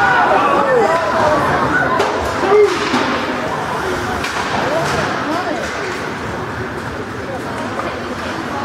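Spectators chatting in an ice hockey rink, several voices overlapping with no clear words. A few sharp knocks from sticks and puck in play come between about two and three seconds in.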